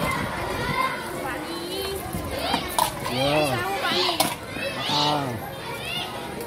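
Schoolchildren's voices calling and chattering over one another in high, rising-and-falling tones, with a lower voice among them. Two sharp clicks come near the middle.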